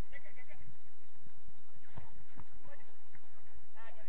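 Players' voices calling out on the pitch: short shouts just after the start and again near the end, with two dull knocks about two seconds in.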